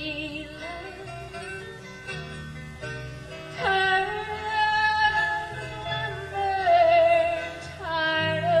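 A live country band playing a song, with held melody notes over a steady bass line. It gets louder a little before halfway through, when a note swoops down and is held.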